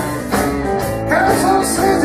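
Live rock band playing: electric guitar and keyboard over a steady beat, with a man singing.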